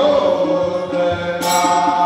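Devotional chant-like singing over percussion: a voice holds long sung notes, with a sharp percussive hit about one and a half seconds in.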